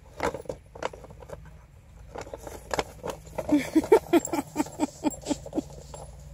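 Paper gift bag crinkling and rustling in quick crackles as a German shorthaired pointer puppy tugs at it and carries it off in her mouth. Over the second half, a run of about eight short laughs from a woman, a few a second, is the loudest sound.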